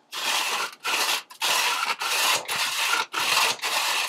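Repeated rasping, scraping strokes, about seven in a row and each under half a second, as the Weber Summit Charcoal Grill's bottom intake vent is worked down to its smoke setting.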